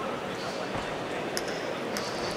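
Crowd and hall noise at an amateur boxing bout, with a dull thud about three-quarters of a second in and two short sharp clicks in the second half, from the exchange in the ring.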